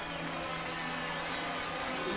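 Racing kart's two-stroke engine running as the kart drives along the track, a steady buzzing noise with a faintly wavering pitch. A low steady tone underneath fades out near the end.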